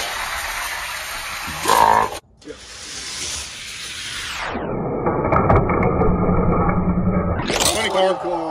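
Die-cast toy cars rolling at speed down plastic drag-strip lanes: a steady rushing rattle of small wheels on track, broken by a sudden cut about two seconds in. From about halfway the sound turns muffled and lower until the cars reach the finish line near the end.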